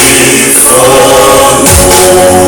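Group of voices singing a song in harmony as dance accompaniment, loud and sustained, with a low thump near the end.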